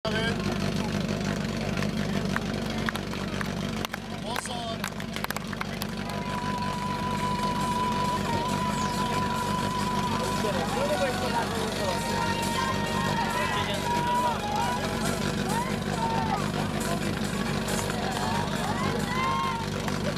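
Portable fire pump's engine running steadily under spectators' shouting, which builds from about halfway through as the hoses are run out. A few sharp clicks sound a few seconds in.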